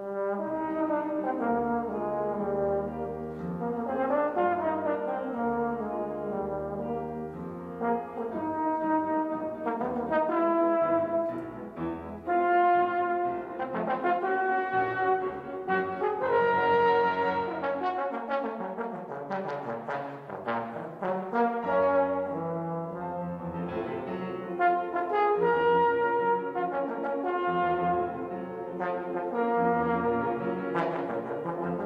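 Trombone playing a classical solo melody of sustained, changing notes, with piano accompaniment underneath.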